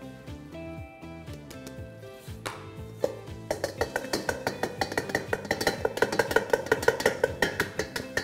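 Soft background music. From about halfway through, a fast, even tapping and rattling of flour being sifted through a sieve over a stainless steel bowl, several taps a second.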